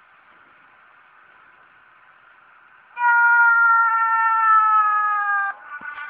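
Faint hiss, then about three seconds in a long held tone with a rich, even set of overtones that slides slightly down in pitch for about two and a half seconds, then fades weaker. It is the cartoon's soundtrack heard through the screen's speaker.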